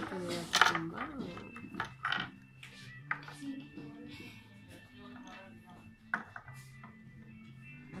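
Soft background music of held low notes that change pitch step by step, with a few sharp clicks of small PVC figures being handled and set down on the table, the loudest about half a second in.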